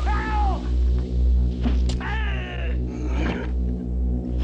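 Two high wailing cries, each rising then falling in pitch, one at the start and one about two seconds in, over a low pulsing horror-film drone with a few sharp hits.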